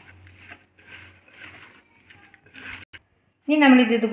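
Faint, soft squishing of a hand kneading a moist grated paneer and potato mixture in a steel bowl, followed about three and a half seconds in by a woman's voice.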